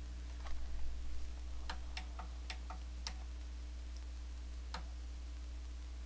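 A few light clicks and taps at irregular intervals, most of them in the first three seconds, over a steady low hum.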